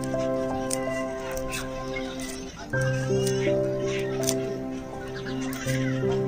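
Background music with long held notes that shift to new chords every few seconds, with faint light ticks on top.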